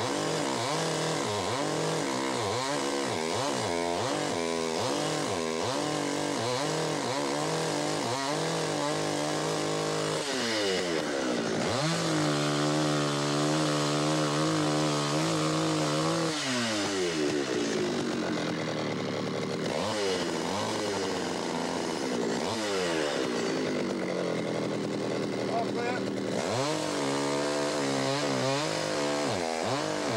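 Two-stroke gasoline chainsaw cutting into a standing tree trunk to fell it. The engine is revved up and down several times, then held at high speed for a few seconds in the cut. It drops back, wavers, and revs up again near the end.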